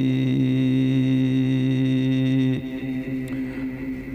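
Men's voices chanting an Arabic devotional poem, holding one long steady note that breaks off about two and a half seconds in, leaving a quieter stretch until the next line begins.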